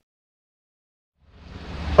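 Silence, then a rushing aeroplane engine sound effect fades in about a second in and grows steadily louder.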